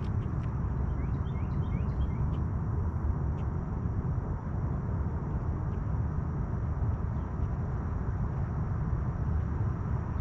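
Open-air lake ambience: a steady low rumble with a few faint bird chirps between about one and two seconds in.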